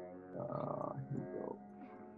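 Soft background music of sustained tones. About half a second in, a rough, croaking sound lasts for about a second over it.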